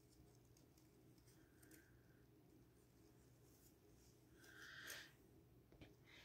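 Near silence: room tone, with a faint, brief rustle of handling about four and a half seconds in.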